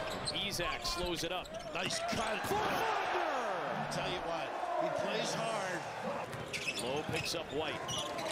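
Basketball game broadcast playing at low level: a basketball dribbled on a hardwood court, with commentators talking over it.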